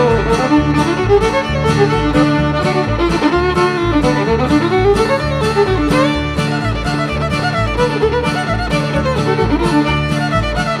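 Fiddle playing an old-time mountain tune over a steady rhythm backing, with a low bass note about twice a second and strummed chords between.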